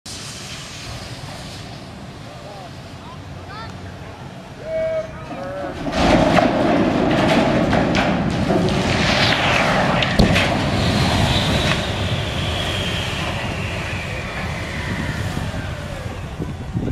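Steel water tower collapsing. After a fairly quiet stretch, a loud rush of straining, crumpling steel sets in about six seconds in, with long falling metal screeches as the column buckles and a sharp crack about ten seconds in, then a rumble as the tank comes down.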